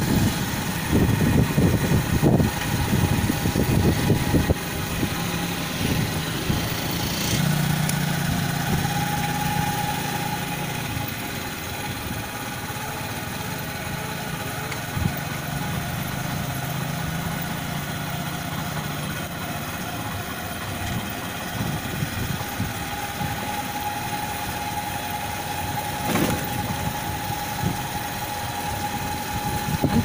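A small vehicle's engine running steadily while travelling. Wind rumbles on the microphone for the first four seconds or so, then the run settles to a smoother, steadier sound.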